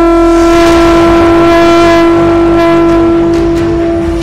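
One long, loud, steady-pitched blown horn note, held through the whole stretch over a low rumble, with a few faint clicks near the end.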